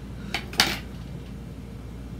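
Two short clinks of small hard objects knocking together, about a quarter of a second apart, the second louder with a brief ring.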